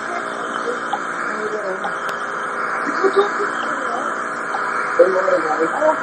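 Steady hiss of a TV broadcast taped onto an audio cassette through the TV's speaker, with faint, indistinct voices in the background.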